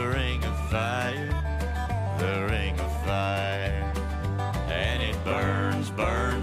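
An acoustic country band playing an instrumental passage: acoustic guitars and an upright bass keep a steady beat, with the bass moving between low notes, while a lead line above slides and wavers between notes.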